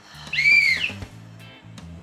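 A single high whistle tone, about half a second long, that rises and falls in pitch like a comic sound effect. It plays over a quiet background music bed with steady low notes.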